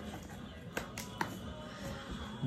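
A cardboard Priority Mail envelope being handled and opened, with a few short sharp clicks in the middle, heard faintly over quiet background music.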